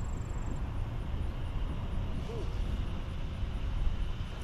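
Wind buffeting the microphone, a steady low rumble that flickers rapidly, with a faint short note about two seconds in.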